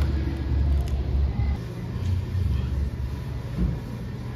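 A low, uneven rumble that swells and fades.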